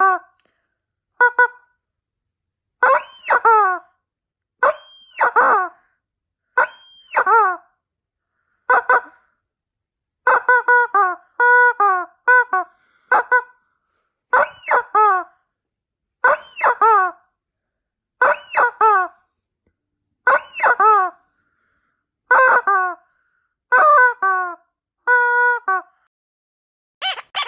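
Rubber chicken squeak toy squeezed over and over: a string of loud honking squawks, some short and some held for about a second, many sliding down in pitch at the end, coming in groups with brief pauses between.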